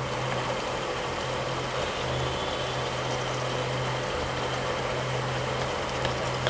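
A pot of green pomfret curry simmering on the stove while a wooden spatula stirs it, over a steady low hum and even hiss.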